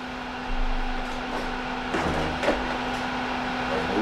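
A steady low hum, with two light knocks about halfway through.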